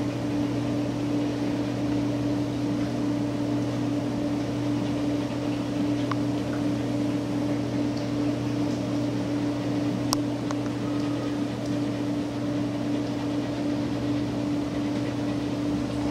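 Steady mechanical hum with a constant low tone, unchanging throughout, with a couple of faint ticks.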